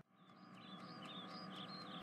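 Faint chirping birdsong from a background ambience track: a string of short, quick chirps that begins a moment after a brief silence.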